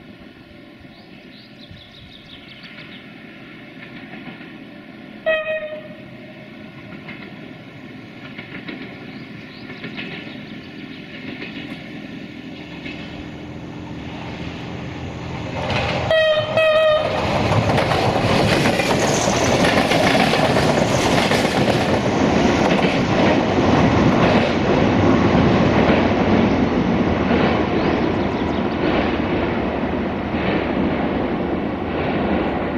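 Approaching diesel multiple unit passenger train sounding its horn: one short blast about five seconds in, then a quick burst of several short blasts. After that the train passes close with loud engine and wheel-on-rail noise.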